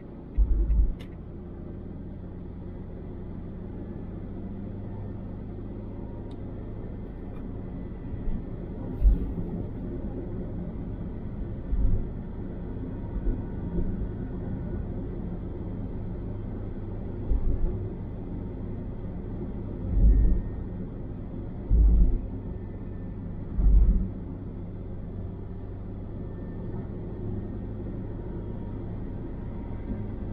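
Steady low rumble of a car's tyre and engine noise heard from inside the cabin while cruising on a highway, with a handful of brief low thumps, three of them close together about two-thirds of the way through.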